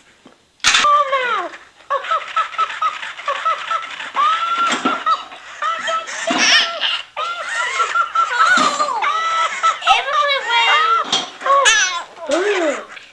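High-pitched giggling and laughter from toddlers and a Tickle Me Elmo doll, starting suddenly a little under a second in and going on in quick bursts, with short breaks.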